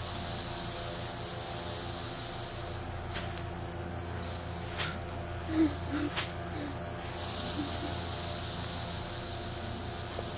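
Insects in the field chirring steadily in a high-pitched hiss, which eases off for a few seconds midway and then comes back. A few sharp clicks sound about three, five and six seconds in.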